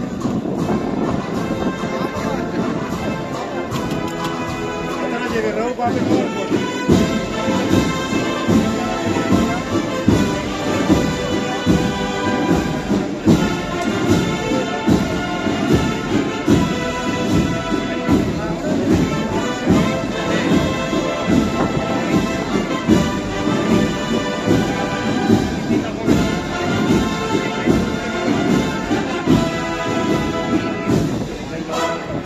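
An agrupación musical, a Spanish procession band of cornets, trumpets and drums, playing a processional march with a steady drum beat.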